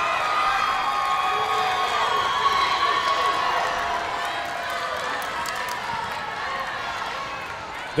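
Crowd of young spectators cheering and shouting after a point, many high voices overlapping, slowly dying down.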